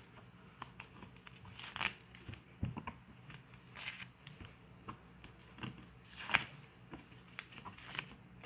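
Adhesive tape being peeled off fabric held in an embroidery machine hoop, with fabric rustling: a series of short rips and crinkles, the loudest about six seconds in.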